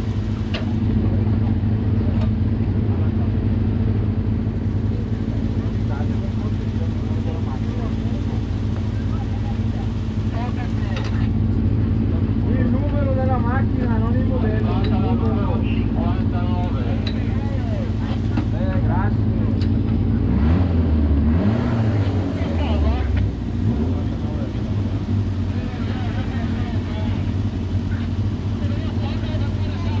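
Suzuki Hayabusa inline-four motorcycle engine in a single-seater hillclimb prototype, idling steadily while the car waits at the start line.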